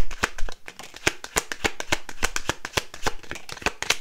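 A deck of tarot cards being shuffled by hand: a quick, uneven run of crisp card slaps and flicks. A louder knock comes right at the start.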